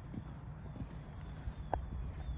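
Faint, soft hoofbeats of a horse cantering on sand arena footing, over a steady low rumble, with one brief sharp sound near the end.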